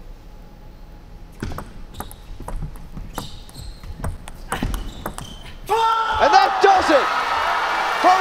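Table tennis ball clicking off the bats and the table in a rally of quick hits, beginning with the serve. Then, about six seconds in, a large arena crowd bursts into loud cheering and shouting as the match point is won.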